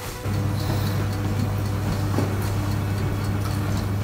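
An electric appliance switched on, running with a steady low hum that starts abruptly just after the beginning and carries on without a break.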